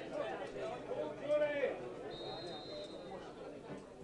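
Faint voices of players and onlookers around the pitch. About two seconds in, a referee's whistle gives one steady blast of about a second, the signal for the penalty kick to be taken.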